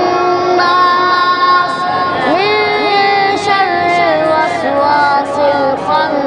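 A boy reciting the Quran in melodic tajweed style (tilawat), holding long drawn-out notes and sliding between pitches with ornamented turns.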